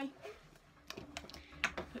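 A few light clicks and taps as a small dropper bottle is picked up and its plastic cap is taken off and set down on a hard tabletop.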